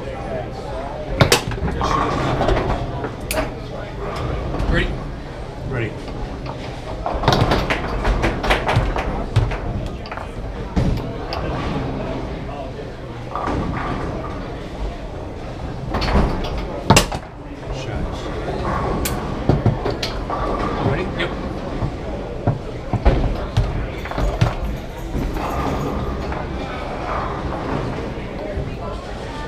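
Foosball in play: sharp clacks of the hard ball struck by the plastic men and hitting the table walls, with knocks of the rods, coming in quick clusters over a steady murmur of voices.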